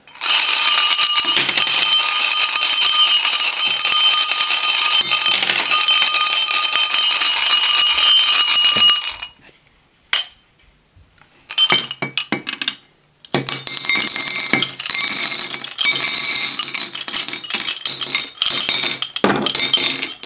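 Hard peppermint candies rattling and clinking inside two glass wine glasses as the glasses are shaken and knocked together, the glass ringing. The clatter stops for about two seconds in the middle, then resumes, and near the end candies are tipped out of a glass into a plastic bowl.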